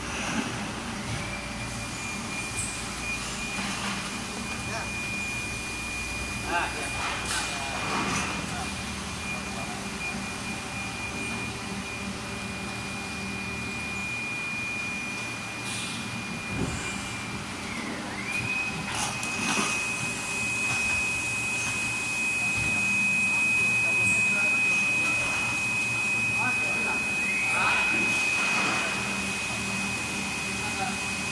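A PET preform injection moulding line running: a steady high-pitched whine that glides down and drops out a little past halfway, then rises straight back, over a low machine hum, with a few sharp knocks.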